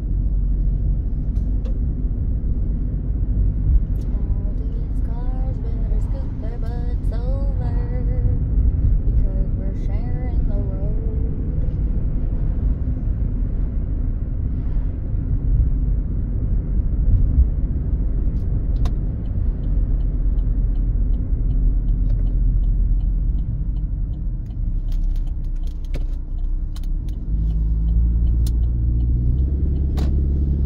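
Car cabin noise while driving: a steady low road and engine rumble that gets louder about 27 seconds in. A voice is faintly heard for a few seconds between about five and eleven seconds in.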